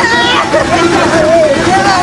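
A woman wailing aloud in distress, her voice high and wavering in long drawn-out cries.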